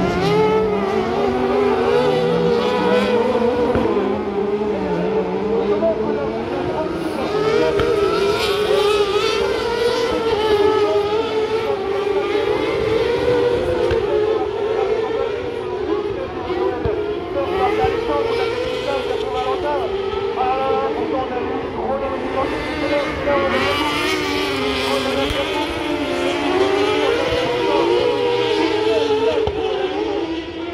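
Kart cross buggy engines running at race speed, their pitch rising and falling continuously as the karts accelerate and lift around the dirt track.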